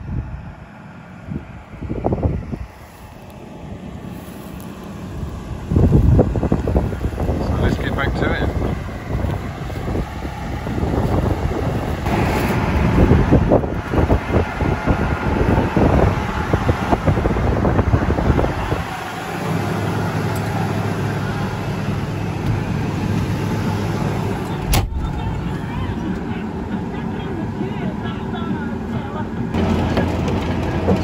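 Case IH Quadtrac tractor's engine running close by, with knocks and rustle on top, loud and uneven for a while. From about two-thirds of the way through it settles into a steady low drone, with a single sharp click a little later.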